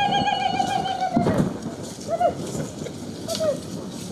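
A woman ululating at a Zulu ceremony: one high trilling cry held for about a second and a half at the start, then two short calls.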